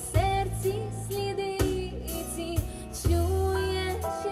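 A young woman singing live into a microphone over instrumental accompaniment with a steady beat and bass, holding long notes.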